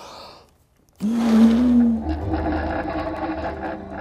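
A steady machine whir with a low hum beneath it, starting abruptly about a second in and shifting to a fuller, multi-tone sound about a second later.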